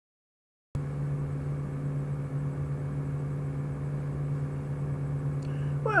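Window air conditioner running, a steady low hum with a fixed drone and fainter higher tones, cutting in just under a second in.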